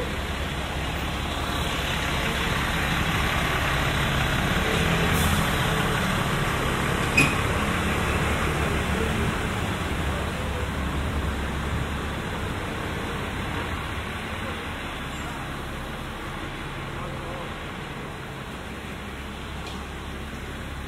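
Street ambience with a motor vehicle passing on the road, its rumble swelling to a peak about five seconds in and then slowly fading away. A single sharp click about seven seconds in.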